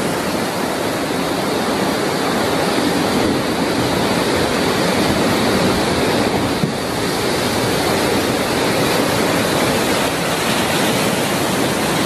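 Heavy storm surf: large waves breaking and churning around a pier, a loud, steady rush of water.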